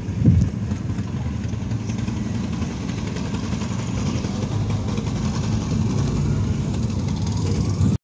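Car driving slowly on a rough road, heard from inside the cabin: a steady low rumble of engine and tyres, with a thump about a third of a second in.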